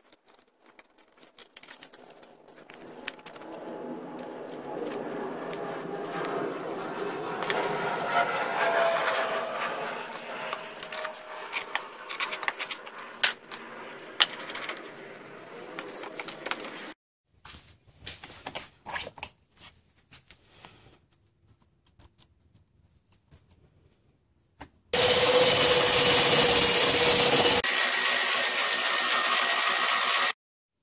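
Drill-powered homemade spindle sander running at a steady pitch for the last few seconds. It changes suddenly to a slightly quieter, higher whine as it sands a piece of wood. Some vibration comes from the drill being mounted at an angle to the shaft. Before that comes a long stretch of rubbing and handling as the wooden drum is worked against sandpaper, then a few scattered knocks.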